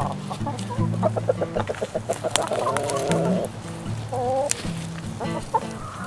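A flock of hens clucking, with a quick run of clucks about a second in and a longer warbling call near the middle.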